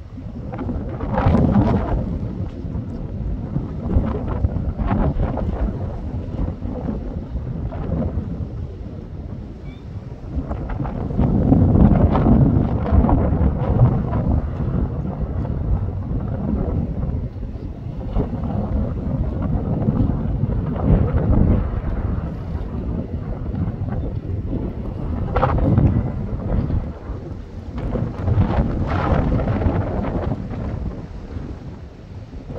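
Heavy wind noise on the microphone: gusts buffeting it in uneven swells of low rumble, strongest about a third of the way in.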